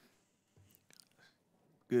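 Near silence with a few faint ticks, then a man starts speaking near the end.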